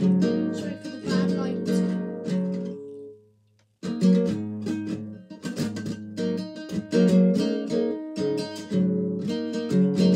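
Nylon-string classical guitar being strummed and plucked through a sequence of chords. The playing dies away around three seconds in, stops for about half a second, then starts again sharply.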